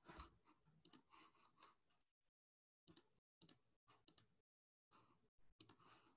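Faint, scattered clicks at a computer desk: a soft clatter of several clicks in the first two seconds, then single sharp clicks about every half second to second.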